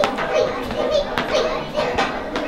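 Young children's voices calling out and chattering, with a sharp knock about a second in.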